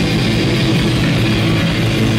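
Live rock band playing loud: distorted electric guitar, electric bass and drum kit together.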